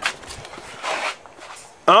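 Brief rustling handling noise with a short click at the start, then a man's voice begins near the end.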